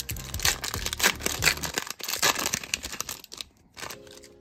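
The foil wrapper of a Bowman Chrome trading-card pack being torn open and crinkled by hand. It is a quick run of sharp crackling tears that thins out over the last half second.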